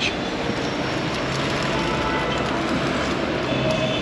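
Steady city street traffic noise, an even hum of road traffic with no single event standing out.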